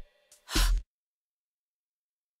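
One short, noisy burst about half a second in, with a faint tick just before it, then the audio cuts to dead silence.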